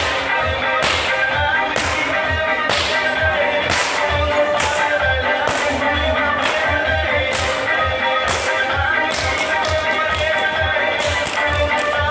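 A whip cracking again and again, at first about one sharp crack a second, then in quick flurries of cracks near the end, over background music with a steady beat.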